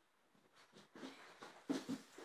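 Near silence, then from about half a second in, soft irregular rustling and crackling of a folded paper slip being handled and opened.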